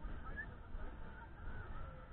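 Wind rumbling on the microphone of a ride camera held high in the air, with faint short high-pitched calls in the distance.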